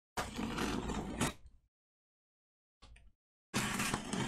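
Hands handling a taped cardboard shipping box: scraping and rubbing on the cardboard for about a second and a half, a brief scrape about three seconds in, and more scraping starting just before the end.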